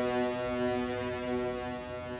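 Background music: one low held drone note with rich overtones, slowly fading.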